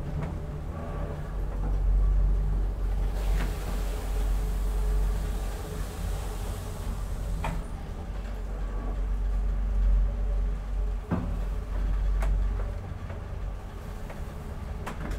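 Deve Schindler hydraulic elevator car rising, with a steady low hum from the pump and travel. A hiss swells for a few seconds in the middle, and several sharp clicks and knocks come as the car passes the landing doors.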